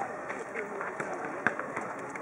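Indistinct voices of people talking, with a couple of short sharp knocks, about a second in and again half a second later.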